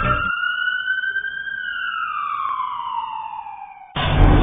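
A single siren wail used as a sound effect: one long tone rising slightly over the first second and a half, then sliding slowly down in pitch and fading away near the end. The backing music under it cuts off just after it begins.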